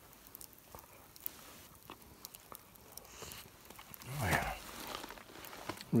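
A person biting and chewing warm, crusty camp-baked bread, with faint crunching clicks throughout. A short voiced sound falling in pitch comes about four seconds in.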